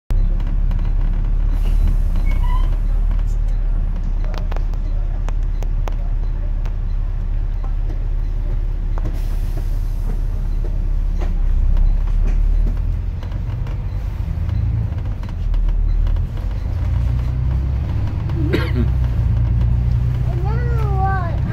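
A double-decker bus heard from its upper deck while driving: a loud, steady low engine and road rumble, with scattered rattles and clicks from the bodywork.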